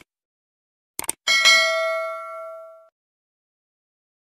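Subscribe-button sound effect: quick mouse clicks, a double click about a second in, then a single notification-bell ding that rings and fades away over about a second and a half.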